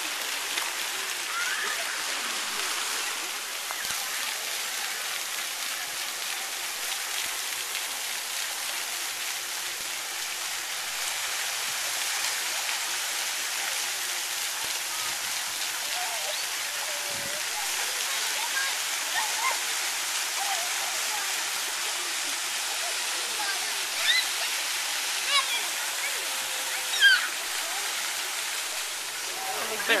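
Steady rushing wash of splashing water in a swimming pool, with children's voices calling out over it and a few sharp high squeals near the end.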